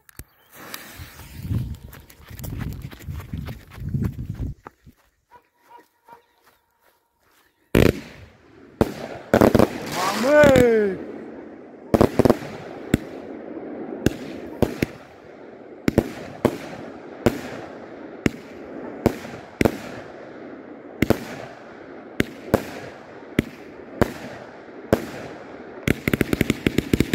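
A Klasek Pyrotechnology 68-shot firework cake with mixed 20, 25 and 30 mm tubes firing, starting about eight seconds in: sharp shots one after another, about one to two a second, over continuous crackling from the bursting stars.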